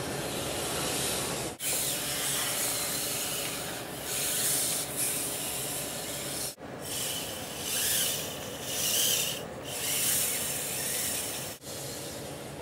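Kojiro musculoskeletal humanoid robot's tendon-driving actuators working as its spine is moved: a steady hiss with several swells of rubbing, whirring noise about a second long each, and two brief dropouts.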